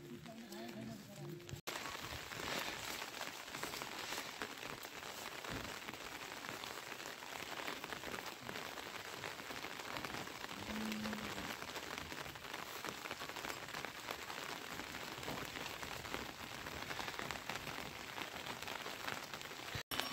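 Steady rain pattering, an even hiss of drops. A short voice sounds right at the start, and a brief low call comes about halfway through.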